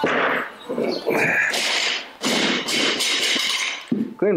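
Loaded Olympic barbell with rubber bumper plates dropped from overhead onto a wooden lifting platform after a missed jerk. It hits with a sudden crash at the start, then bounces and rattles in several loud stretches as it settles.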